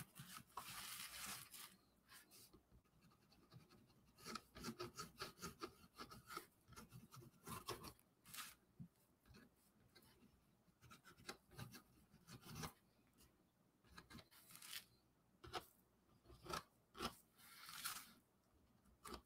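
Faint scratching and rubbing of a paint marker's tip across brown card in many short, irregular strokes, as white highlights are drawn in.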